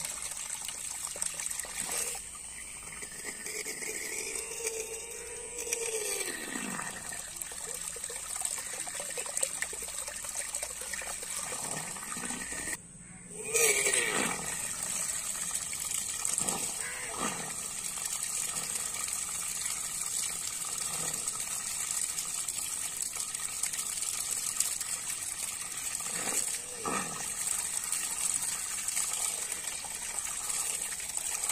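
Homemade submersible water pump driven by a 555 DC motor running in a tub, its jet gushing and splashing steadily into the water. The sound drops out briefly about halfway, then comes back louder.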